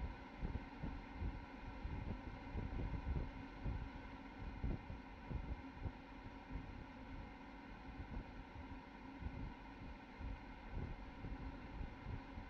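Faint, uneven low rumble of wind buffeting an outdoor microphone, over a faint steady hiss.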